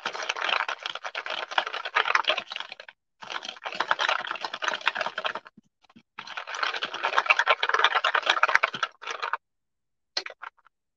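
A handful of freshly painted beads rattling and rolling around inside a paper bowl as it is shaken, in three bouts of fast clicking with short pauses between them. The shaking knocks the excess wet paint off the beads.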